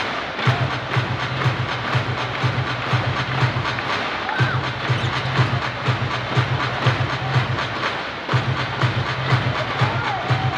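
A loud, steady rhythmic beat with a heavy bass pulse over arena crowd noise, the beat dropping out for a moment about four and again about eight seconds in.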